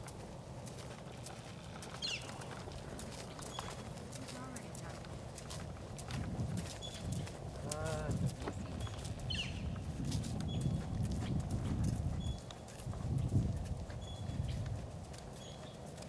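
Hoofbeats of a horse cantering on sand arena footing, with the horse's movement and tack adding low surges and clicks through the middle of the stretch.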